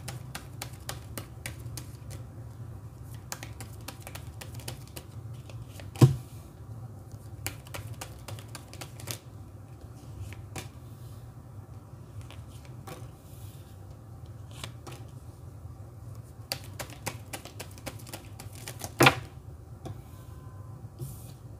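Tarot cards being shuffled and dealt onto a table: a run of quick, light clicks and flicks, with two sharp knocks, one about six seconds in and one near the end. A steady low hum runs underneath.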